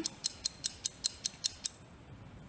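Rapid, even clock-style ticking of a countdown timer sound effect, about five ticks a second, stopping shortly before the end.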